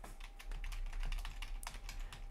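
Typing on a computer keyboard: a quick, even run of keystrokes.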